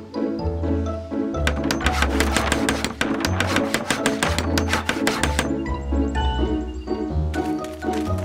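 Cartoon background music with a steady bass line, overlaid from about a second and a half in until about five and a half seconds by a rapid run of knocks, roughly eight a second: a cartoon hammering sound effect for quickly building a small wooden house.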